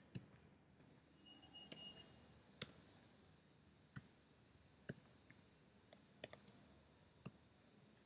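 Computer keyboard keystrokes: faint, irregular clicks, a dozen or so spread out with short pauses between them.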